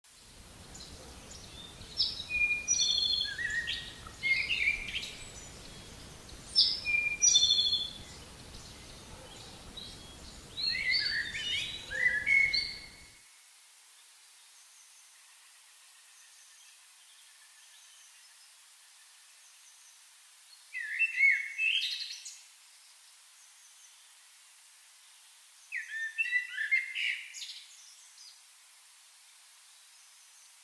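A songbird singing short, quick phrases of chirps and trills, about six phrases with pauses of several seconds between the later ones. A low background noise underneath cuts off suddenly a little before halfway through.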